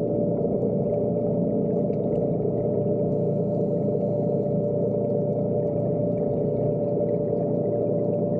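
Underwater scooter's electric motor and propeller running at a steady speed, heard underwater as a constant hum with one unchanging tone.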